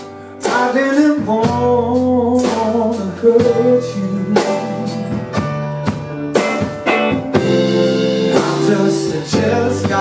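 Live band playing a slow soul ballad: electric guitar, keyboards, bass and drums, with a male voice singing. There is a short break right at the start before the band comes back in.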